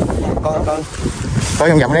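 Wind buffeting the microphone, a steady low rumble, under two short stretches of talking.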